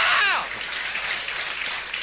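A shouted call trails off with a falling pitch, then a steady hiss of audience applause.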